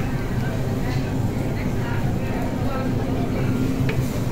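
Background chatter of diners in a busy restaurant over a steady low hum, with no single voice standing out.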